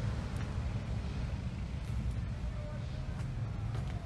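Steady low outdoor rumble picked up by a handheld phone microphone as it is moved about, with a faint wavering voice in the distance about halfway through.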